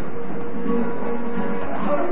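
Acoustic guitar playing flamenco-style music with held notes.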